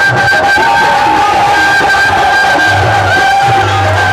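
Bansuri (bamboo flute) playing a Rajasthani folk melody in long held notes with small slides between them, over a steady drum beat.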